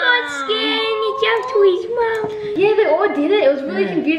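Speech only: a child's high-pitched voice talking.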